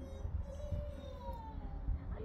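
A long drawn-out vocal call that wavers and then slides down in pitch through the second half, over a low steady hum.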